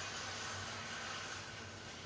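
Steady hum and hiss of a ceiling fan running, with no distinct events.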